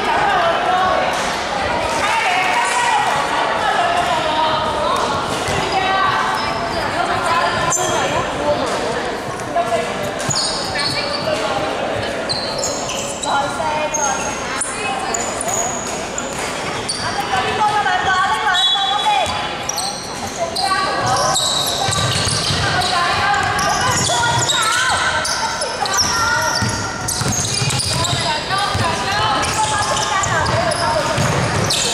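Basketball game in a large echoing gym: the ball bouncing on the hardwood court and players' voices calling out. Short high squeaks come and go, most of them in the middle and near the end.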